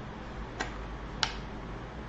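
Two short, sharp clicks about two-thirds of a second apart, the second louder, over a steady low hum and hiss.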